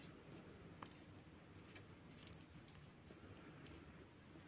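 Near silence with a few faint, scattered clicks of metal knitting needles as stitches are knitted.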